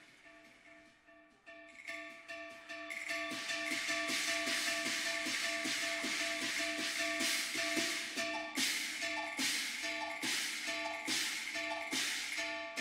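Cantonese opera instrumental accompaniment, led by plucked strings over held notes. It starts soft and swells to a steady level over the first few seconds, with a run of crisp plucked or struck accents in the second half.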